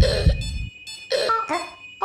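Short squeaks in two bursts, one at the start and one a little past a second in, with low thumps that stop under a second in. A steady high electronic tone runs underneath.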